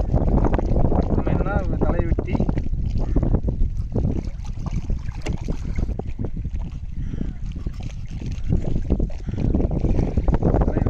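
Wind rumbling on the microphone, with a man's voice briefly about one to two seconds in.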